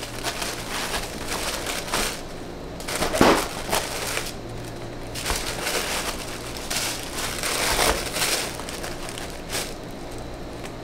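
Kraft packing paper rustling and crinkling as hands shuffle small cardboard soap boxes into a paper-lined shipping box, in uneven bursts with the loudest crinkle about three seconds in.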